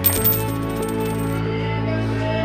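A coin drops with a clink and rings as it spins and rattles on the ground. The bright metallic ring stops about a second and a half in. Background music plays under it.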